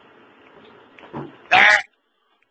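A farm animal's bleat-like cry: a softer call just over a second in, then one short, loud cry that cuts off suddenly.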